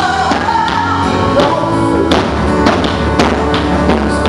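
Live band playing a pop song: a singer's voice over drums, bass guitar and keyboards, with a steady beat of drum strokes.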